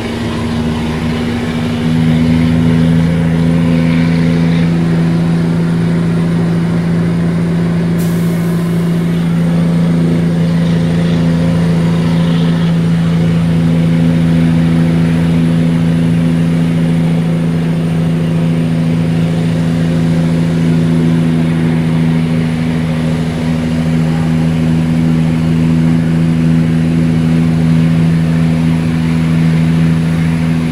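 Caterpillar 3406E inline-six diesel of a Peterbilt 379 pulling steadily under load, heard from inside the cab. The engine note steps up in loudness about two seconds in and then holds a steady drone.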